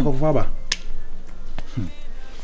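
A short vocal exclamation, then a sharp finger snap a little after half a second in, with a fainter click later.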